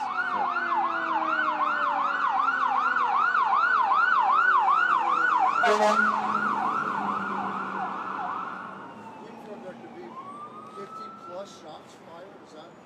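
Emergency vehicle siren in a fast yelp, about three or four swoops a second, passing by and fading out about nine seconds in.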